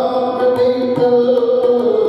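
Devotional music: chant-like singing over steady held tones, with light, regular high ticks of small percussion.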